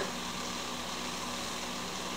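Steady background hiss with a faint low hum, and no distinct sound: room tone in a pause between lines.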